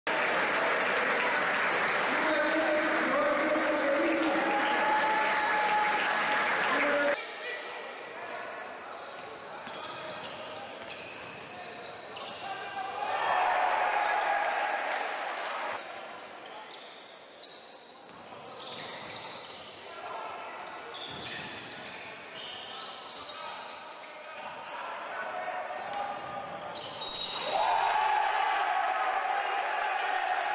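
Basketball being dribbled on a gym floor amid players' and spectators' voices. A loud stretch of voices during the opening lineup breaks off suddenly about seven seconds in, and near the end there is a sudden burst of cheering.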